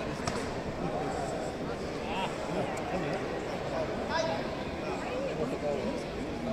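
Crowd of spectators talking among themselves: an indistinct babble of many overlapping voices at a steady level, with no single clear speaker.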